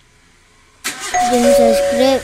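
Near-quiet background, then a little under halfway a loud outro jingle starts suddenly: held chime-like tones with a voice.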